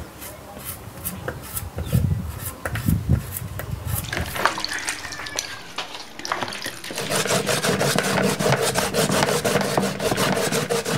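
Sweet potatoes being scrubbed by hand in a plastic bowl of water: repeated rubbing and scraping strokes that quicken and grow louder about seven seconds in, when a steady hum joins them.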